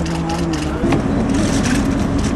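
A vehicle engine running close by, its steady low note shifting a little about a second in, with a single sharp click near the middle.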